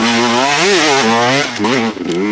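Enduro dirt bike engine under load on a climb, its throttle opened and closed so the pitch holds and then swells up and down in short bursts.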